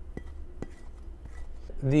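A silicone-headed Dreamfarm Supoon scraping food off a ceramic plate, with a few light clinks, over a low steady hum. A man starts speaking near the end.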